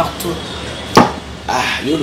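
A single sharp knock about a second in, the loudest sound here, with talk before and after it.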